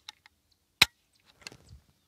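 Mossberg Gold Reserve Super Sport over-under shotgun dry-fired: its mechanical trigger gives one sharp click a little under a second in, with a faint click at the start and small ticks of handling later. The mechanical trigger resets itself without needing recoil.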